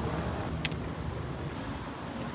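Road traffic on a city street: a steady low rumble of passing cars, with one brief sharp click about two-thirds of a second in.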